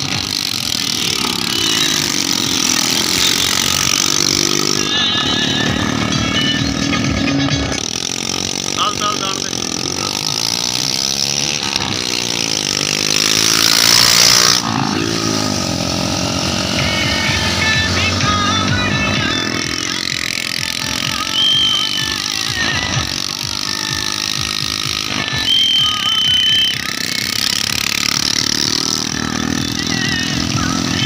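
Small motorcycle engines running at road speed close by, with wind noise. Their pitch rises and falls as the bikes speed up, slow down and pass. A few short high-pitched tones sound near the middle and later on, and voices come through indistinctly.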